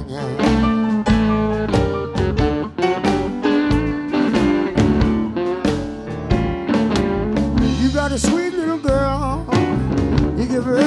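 Live blues band: electric slide guitar with drums, and a man singing. The pitch wavers clearly a little after eight seconds in.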